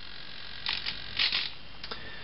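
Soft rustles from handling a hand-held camera, three or four short brushes, over a faint steady hiss.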